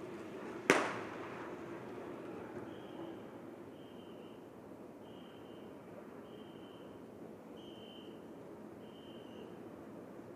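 A single sharp bang, typical of the pistol shot fired as a team pursuit team crosses the finish line. It is followed by a faint run of short high tones, about one a second.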